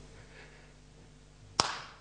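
Faint steady low hum, then a single sharp smack about one and a half seconds in, with a short ring-out.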